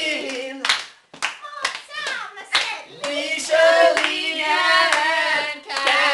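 Several people singing together unaccompanied, with scattered sharp hand claps.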